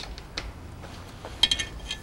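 Light handling clicks and a short rattle, mostly about a second and a half in, as a Knucklehead cylinder head and a metal pointer tool are handled on a workbench, over a low steady hum.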